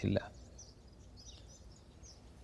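A man's word ending, then faint outdoor background: scattered faint bird chirps over a low steady hum.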